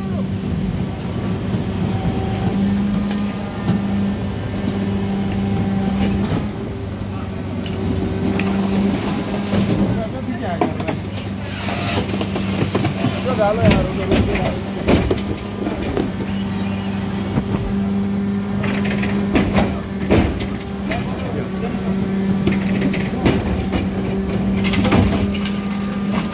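Mercedes-Benz Econic refuse lorry with a Geesink rear-loader body running with a steady hum as its hydraulic lift tips an 1100-litre wheeled bin into the hopper. There are clusters of knocks and bangs from the bin against the lifter and waste dropping in, about halfway through and again near the end.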